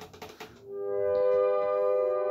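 A 120-year-old reed pump organ begins playing about half a second in: a held chord of steady reedy tones that swells up as the bellows fill, with a higher note joining a moment later.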